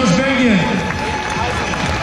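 A man's voice over a loudspeaker, the race announcer talking in short bursts, with crowd noise behind.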